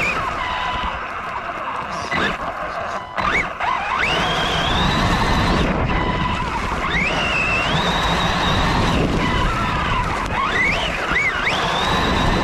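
Electric motor of a Losi Lasernut RC truck heard from onboard, its whine sweeping up sharply in pitch with each burst of throttle and holding high, several times, over a steady rush of wind and tyres spraying dirt.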